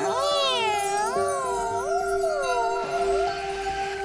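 Cartoon soundtrack: a held musical chord with a high, wavering, voice-like glide over it for the first three seconds or so, as the kitten works her cute power on the robot dog.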